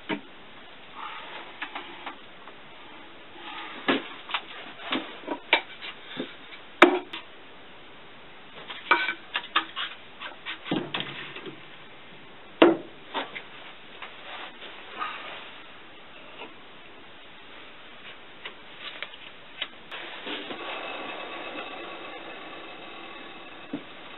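Scattered metal clanks and knocks as a heavy four-jaw lathe chuck is handled and fitted onto the lathe spindle. From about 20 seconds in, the lathe runs with a steady hum and the chuck spinning, fading slightly toward the end.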